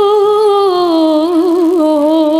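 A young woman's solo voice singing a sholawat unaccompanied into a microphone. A long held note with vibrato slides down about a second in, breaks into a quick wavering ornament, then settles on a lower held note.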